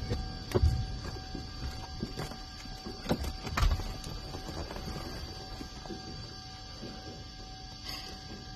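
Knocks, thumps and rustling as a person climbs through the door of a small plane and settles into the seat, the loudest thumps about half a second in and again about three and a half seconds in. A steady high whine runs underneath throughout.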